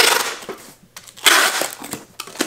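Packing tape being pulled off a handheld tape gun dispenser across a cardboard shipping box. Two harsh rasps, one at the start and one a little over a second in, with small clicks between.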